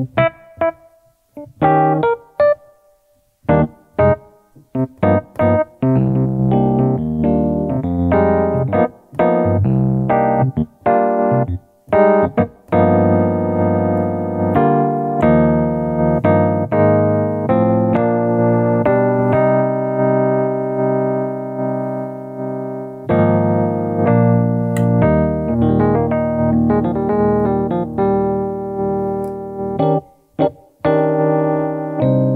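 Roland LX706 digital piano played on one of its electric piano tones, heard through its own speakers. It begins with a few separate short notes, then moves into sustained chords from about six seconds in, with a brief break a little after twenty seconds.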